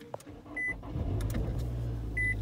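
A car engine running with a steady low hum that builds up about half a second in. Two short, high beeps come about a second and a half apart.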